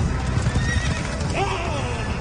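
Horses galloping past in a dense, continuous rumble of hooves, with one horse whinnying about one and a half seconds in.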